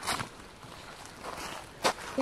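Footsteps crunching on dry pine needles and leaf litter, with two louder steps: one right at the start and one shortly before the end.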